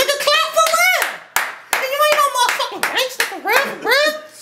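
A small group clapping their hands, with voices calling out over the applause.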